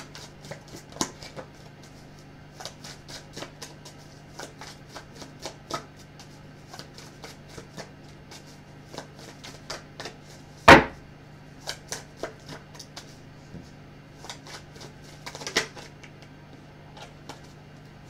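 Tarot cards being shuffled by hand: a run of quick, irregular card flicks and clicks, with a louder knock about eleven seconds in and another near the end. A faint steady low hum sits underneath.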